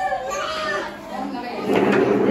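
Children and adults talking over one another in a room, with high children's voices among them.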